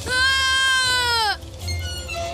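Cartoon boy's scream: one long, high cry held for over a second that sags in pitch and cuts off suddenly.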